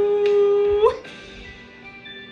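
A cartoon dog character's singing voice holds the long final note of a song, then breaks into a sudden upward squeak and stops just under a second in. Faint musical accompaniment tones continue after it.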